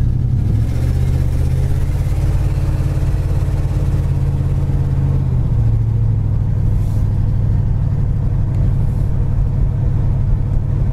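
1968 Pontiac GTO's 400 cubic-inch four-barrel V8 running under way, heard from inside the cabin with road noise. Its steady low engine note changes about five and a half seconds in.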